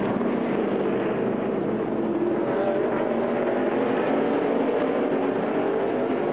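Several NASCAR Cup cars' V8 engines running at a steady, moderate pace under caution, their overlapping engine notes blending into a continuous drone.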